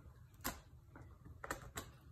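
A dog chewing and tearing at a plush toy, with three sharp clicks: one about half a second in and two close together near the end.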